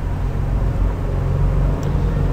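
Steady low background hum, with even low-pitched bands and no change in level.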